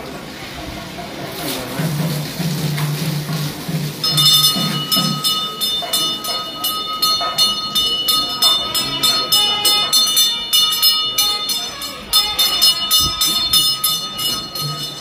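A temple bell rung rapidly for the abhishekam, about three to four clangs a second, starting about four seconds in and pausing briefly near the end before going on.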